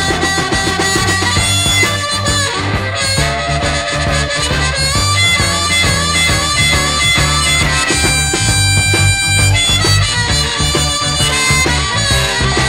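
Blues harmonica playing the lead over an electric blues band with a steady bass line and drums, in an instrumental passage with no singing. The harmonica holds one long note about eight seconds in.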